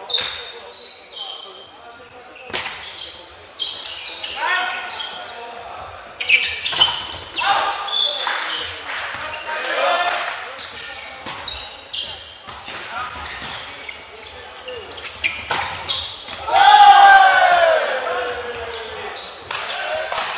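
Volleyball rally sounds in a large sports hall: repeated sharp slaps of the ball being struck, with players' shouted calls between them. The loudest call comes near the end. Everything echoes off the hall walls.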